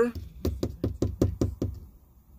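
A rapid run of about a dozen knocks, roughly seven a second, growing fainter toward the end.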